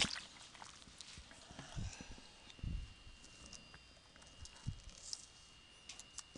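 Quiet classroom room noise: scattered soft knocks, clicks and shuffling, with a couple of low thumps around two to three seconds in. A faint steady high-pitched tone starts about two seconds in.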